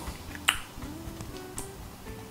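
A metal fork clicks sharply once against the teeth about half a second in as it is drawn out of the mouth, followed by quiet chewing.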